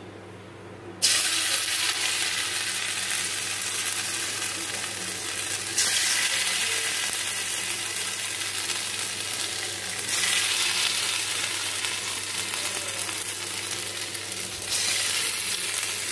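Green leaf-paste fritters (gandhal pata bora) sizzling in hot oil in an aluminium kadai. The hiss starts suddenly about a second in, as the first fritter goes into the oil, and jumps louder three more times, roughly every four to five seconds, as each further fritter is dropped in.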